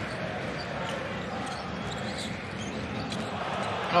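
Steady crowd noise in a basketball arena, with a basketball bouncing on the hardwood court during live play.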